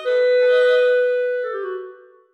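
Orchestral music: a woodwind holds one long note that fades out near the end, closing a short phrase.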